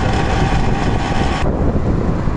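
Wind rushing over the microphone with the rumble of a moving vehicle on the road. The hissy upper part of the wind noise drops away about one and a half seconds in.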